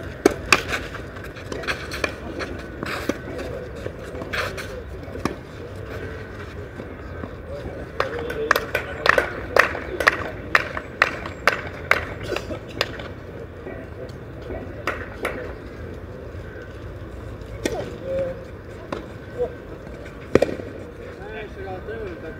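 Tennis balls struck by rackets and bouncing on a clay court: a run of sharp pops, scattered at first and then coming about twice a second for several seconds, with scuffing steps and voices in the background.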